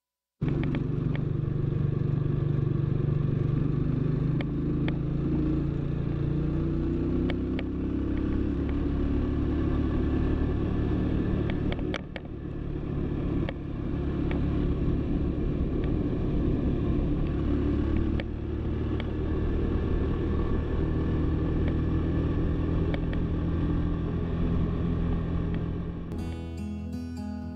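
Cafe-racer motorcycle engine running steadily under way, with scattered sharp clicks and a brief drop in level about twelve seconds in.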